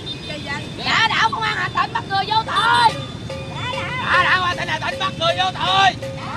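Several people talking and shouting over one another in raised voices. A steady held tone joins about halfway through.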